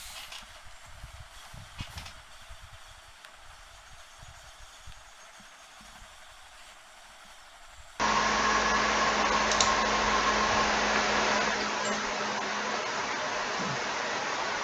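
A faint hiss with a few soft clicks, then about eight seconds in a sudden switch to a much louder, steady fan-like rushing noise with a low hum under it.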